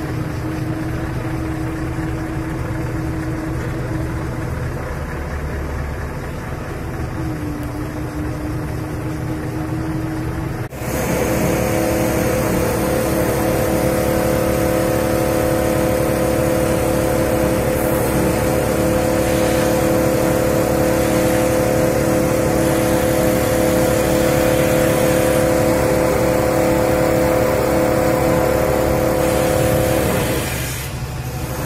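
Truck-mounted hydraulic crane running steadily: a diesel engine with the hum of its hydraulic pump. About ten seconds in the sound breaks off abruptly and comes back louder and higher in pitch, holding steady to the end.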